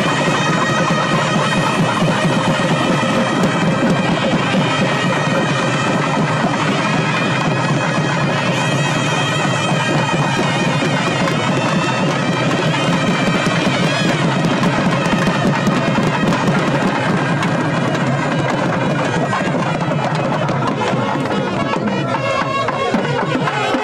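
South Indian temple procession music led by loud double-reed pipes of the nadaswaram type, playing steadily and without a break.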